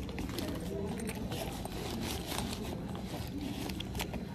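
Indoor airport terminal ambience: a steady low hum with faint distant voices and scattered small clicks and rustles close to the microphone.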